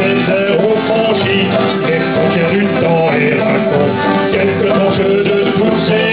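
Acoustic folk band playing a sea song live, with acoustic guitar under a steady, shifting melody line.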